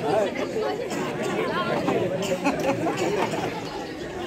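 Voices talking over one another: chatter.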